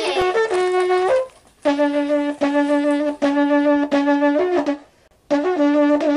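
A brass-toned horn playing long, loud held notes, mostly on one low pitch with a few brief higher notes, breaking off twice for a moment.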